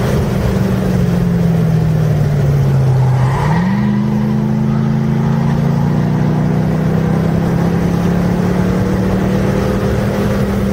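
A Mercedes-Benz car's engine, heard from inside the cabin on a race track. Its revs fall under braking, step up sharply about three and a half seconds in as it downshifts, then climb steadily as it accelerates out of the corner.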